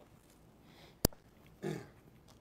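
A single sharp knock, the loudest sound, about halfway through, then a brief grunt-like voice sound shortly after.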